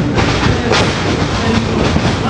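A wrestler slammed onto the ring mat with a thud, over a steady loud din of the wrestling venue.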